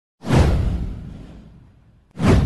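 A whoosh sound effect with a deep boom underneath. It starts about a quarter second in, swells fast and then fades away over about a second and a half.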